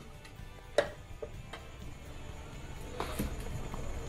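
Metal spoon knocking against an aluminium pot while stirring a broth: one sharp clink about a second in, then a few lighter knocks, over a low steady rumble.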